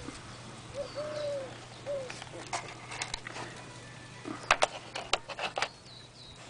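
A dove cooing a few notes, about a second in and again near two seconds, with faint high bird chirps over a steady low hum. Near the end comes a quick run of sharp clicks.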